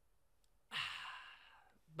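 A man sighs: one long breath out that starts suddenly and fades away over about a second.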